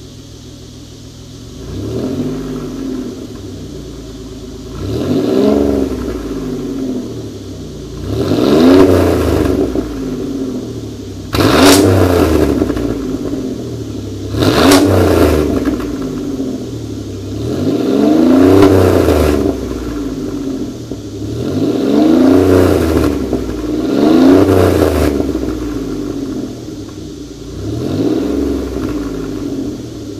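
2009 Chevrolet Impala police car's stock 3.9-litre V6 through aftermarket mufflers, idling and then revved about nine times, each rev rising and falling in pitch, up to about 4,000 rpm. One rev, around the middle, starts with a sharp crack.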